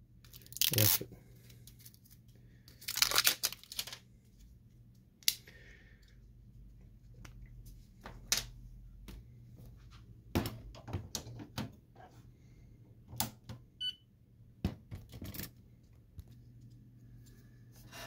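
Plastic wrappers being torn and peeled off Canon ink cartridges, with sharp clicks and knocks as the cartridges are snapped into the printer's print-head carriage one after another.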